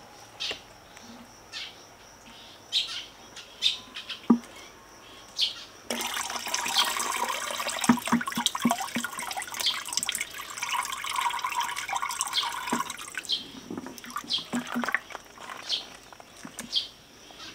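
Buttermilk pressed by hand out of freshly churned butter, running and splashing into the churn pail for about seven seconds, starting near the middle. Small birds chirp throughout.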